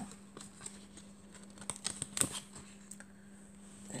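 Laminated picture cards being handled and moved on a laminated board: a few soft clicks and short rustles, most of them around the middle.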